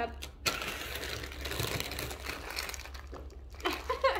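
Plastic wrappers of instant ramen packets crinkling as a handful of packets is handled, a dense crackle lasting about three seconds.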